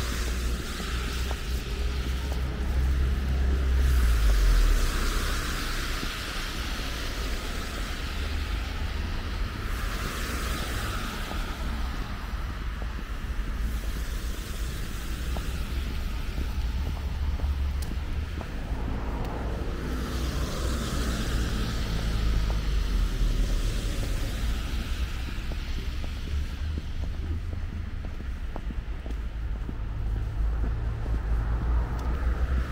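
Street traffic: cars passing on a wet, slushy road, their tyre hiss swelling and fading about three times, over a steady low rumble of wind on the microphone.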